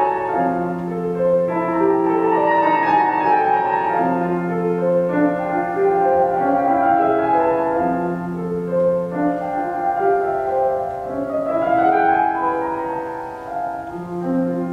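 Grand piano playing a slow classical piece: low bass notes held for a few seconds at a time under a melody in the middle register, with a rising run of notes about eleven seconds in.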